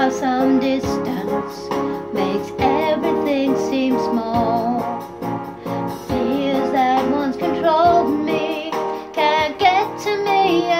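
A woman singing a pop ballad over instrumental accompaniment, with vibrato on the held notes.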